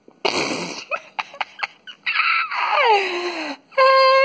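Loud vocal noises close to the microphone: a short blown, breathy burst, then a long wail that falls steeply in pitch and, near the end, a held high whine that breaks into wavering cries.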